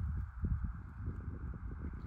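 Wind buffeting the microphone: an uneven low rumble with many small irregular thuds, over a faint steady hiss.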